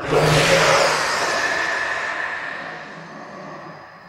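A dramatic film sound effect: a sudden loud rushing whoosh that fades away over about three seconds.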